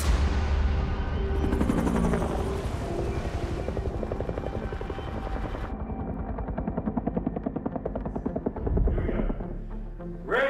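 A film soundtrack of dramatic score music with heavy low sound effects. In the second half a rapid, even pulsing runs under the music. About halfway through, the higher sounds drop away suddenly.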